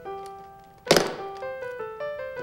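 Soft piano music with one loud thunk about a second in, from the latches of a briefcase being snapped open.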